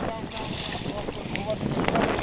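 Wind buffeting the microphone over choppy sea water beside a boat hull, with scattered short splashes from a hooked shark thrashing at the surface.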